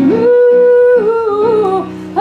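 A woman singing a long held note, then stepping down through a few lower notes and breaking off just before the end, over soft electric keyboard accompaniment.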